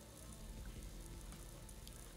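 Faint room tone: a low, even hiss with nothing else heard.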